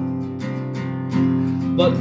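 Acoustic guitar strummed steadily between sung lines, with a voice starting to sing again near the end.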